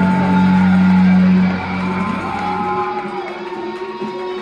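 Live rock band playing with electric guitars. A loud held low note cuts off about a second and a half in, the bottom end drops away near three seconds, and the guitar lines carry on.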